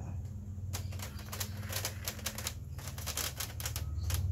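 Quick, irregular clicking and clattering as hands work on the bare metal back chassis of a flat-screen TV, over a steady low hum.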